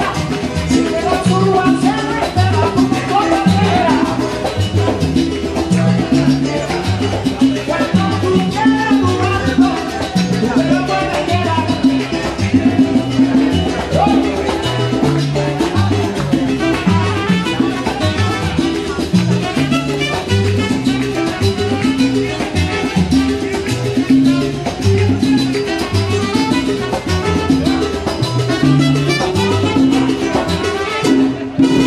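Salsa band playing: a busy, repeating bass line under percussion, with some singing.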